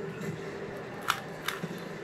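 Rubik's cube layers clicking as they are twisted by hand: two sharp plastic clicks close together about a second in.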